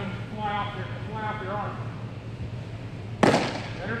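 A pitched baseball smacks into a catcher's mitt about three seconds in: one sharp, loud pop with a short ring-out. Before it a man speaks briefly, over a steady low hum.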